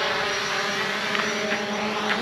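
Quadcopter drone hovering low, its propellers giving a steady multi-tone buzzing hum.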